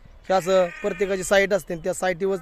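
Sheep bleating, with one drawn-out call starting about a third of a second in, heard among a man's speech.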